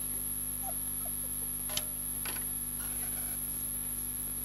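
Steady electrical hum and a high whine, with a sharp click a little under two seconds in and a fainter click about half a second later.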